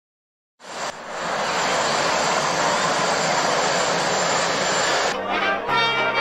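A steady roar of outdoor noise starts about half a second in and holds evenly. About five seconds in it gives way to a brass band playing.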